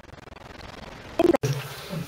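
Faint hiss, then a clipped snatch of a man's voice that cuts off abruptly about one and a half seconds in, followed by a steady low buzzing hum.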